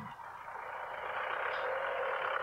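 Motor vehicle running, its sound growing gradually louder as it draws closer.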